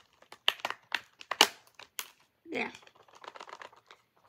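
Sharp plastic clicks and clacks from a Blu-ray case being forced and handled, with one loud snap about a second and a half in.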